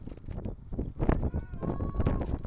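Wind gusting on the microphone, a low rumble in uneven gusts, with scattered knocks and thuds and faint distant voices.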